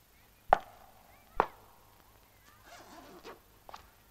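Two sharp knocks about a second apart, a boot's high heel striking the tiled floor, each with a short ringing tail from the tiled room. Then a short rustle of handling and a light click near the end.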